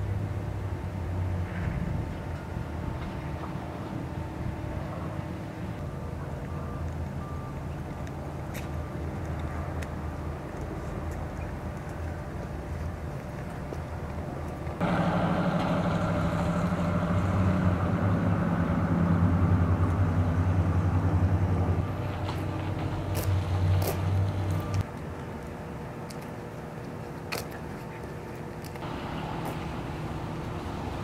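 Steady low engine hum of motor vehicles, with a few faint clicks. It jumps louder about halfway through and drops back about seven seconds later.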